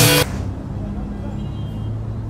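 The rock song cuts off abruptly about a quarter second in. It leaves a low, steady outdoor background rumble, like distant traffic, with faint voices.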